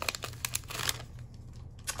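Foil Pokémon booster-pack wrapper crinkling as it is pulled open and the cards are slid out: a quick run of crackles in the first second, then quieter rustling.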